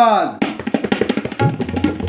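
Tabla and bayan played at a fast, dense pace in an Ajrada kayda in chatasra jati. At the start a short voiced call from the player rises and falls in pitch over the drumming. From about a second and a half in, a ringing bayan bass tone sustains under the strokes.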